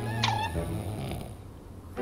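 A person snoring: a low rattling rumble, with a short falling whistle near the start.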